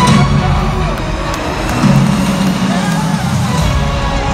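Music through a stadium public-address system with an indistinct amplified voice over it, loud and continuous.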